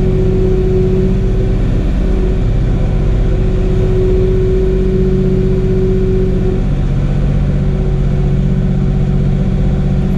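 Tractor engine running steadily, heard from inside the closed cab, with a steady whine above the engine note that fades about two-thirds of the way through.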